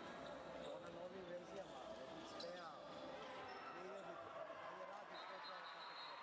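A handball bouncing on a sports hall's wooden court during play, under overlapping shouts and calls from players and spectators.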